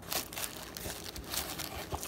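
Tissue paper lining a gift box rustling and crinkling as a hand digs through it, a run of irregular crackles.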